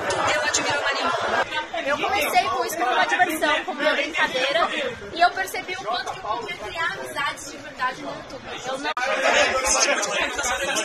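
People talking, with chatter around them.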